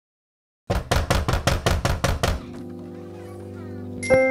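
A second of dead silence, then a rapid run of about a dozen sharp knocking hits, roughly seven a second, giving way to a held low chord: a recorded dramatic sound cue.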